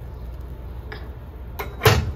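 Milk boiling in a steel saucepan on an electric coil burner over a steady low rumble and faint hiss. Near the end a light tick is followed by a sharp metal clunk as the pan is shifted on the burner.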